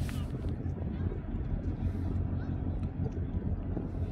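Steady low outdoor background noise with faint voices of people nearby.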